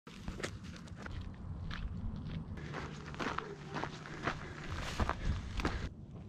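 Footsteps of a hiker on a rocky, gravelly dirt trail: a string of uneven steps with crunching and scuffing, over a steady low rumble.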